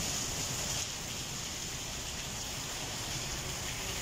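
Steady rain falling onto a wet paved courtyard floor: an even hiss of drops and splashes.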